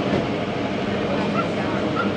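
Safari tour tram running steadily: a continuous drone of the vehicle and its motion, with no sudden sounds.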